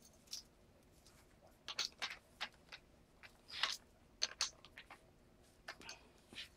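Faint, short clicks and rustles of handling, scattered irregularly, with no drill running.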